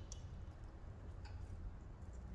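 Two faint clicks of plastic wiring-harness connectors being handled and plugged in on the engine, over a low steady hum.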